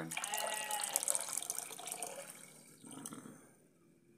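Clear liquid poured from a glass into a plastic bucket of muddy water, splashing for about two and a half seconds and then tailing off.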